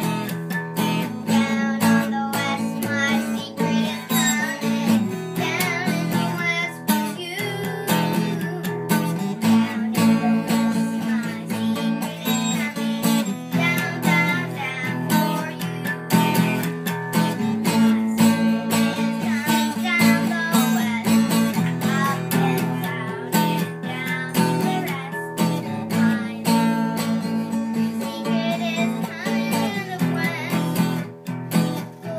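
Music: a song with strummed acoustic guitar and a voice singing over it.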